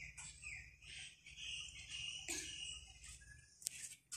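Faint chirping of small birds and insects, short calls, some bending in pitch, over a low steady background hum, with a single sharp click near the end.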